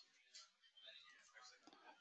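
Near silence: faint room tone in a pause between speech.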